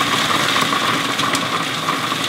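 Breville Sous Chef food processor running steadily, its blade chopping a mix of toasted nuts, dates, goji berries and hemp seeds into a coarse crumb.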